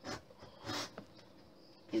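A steel V-shaped lino cutter (No 9) scraping along a groove in a wooden strip, with two short scraping strokes in the first second.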